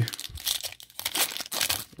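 Foil wrapper of a 2021 Panini Certified football card pack crinkling and tearing as it is peeled open by hand, a quick run of irregular crackles.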